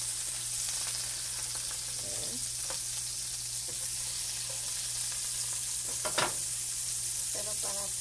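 A pancake and a pat of melting butter sizzling in a nonstick frying pan: a steady frying hiss. A brief clatter of utensils about six seconds in is the loudest moment.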